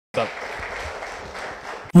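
Audience applause, a steady even patter that fades a little, cut off just before the end as a voice starts speaking abruptly.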